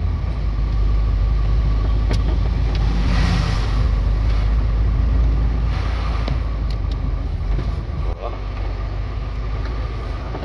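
Heavy truck's diesel engine pulling steadily up a long climb, heard from inside the cab along with road noise. A brief swell of rushing noise comes about three seconds in.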